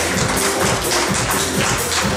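Music with a quick, steady percussive beat.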